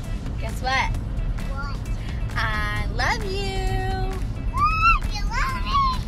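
A high-pitched voice calling out in short, rising and falling cries, with one note held for about a second around three seconds in, over a steady low background rumble.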